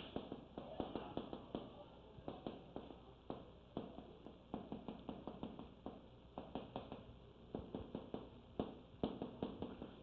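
Chalk tapping and scratching on a blackboard as characters are written: a quick, irregular run of faint short strokes.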